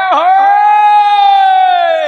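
A loud, drawn-out vocal cry held on one high pitch for about two seconds, sagging in pitch near the end.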